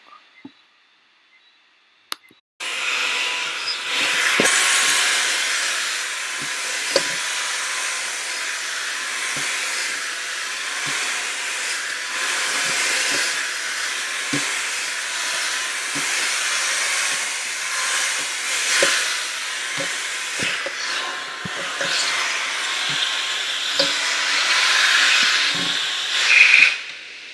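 Handheld hair dryer blowing on long natural hair, a loud steady rushing hiss with a faint motor whine. It starts suddenly about two and a half seconds in, after near silence, and a few light knocks come through it.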